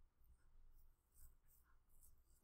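Near silence: room tone, with a couple of faint ticks about a second in.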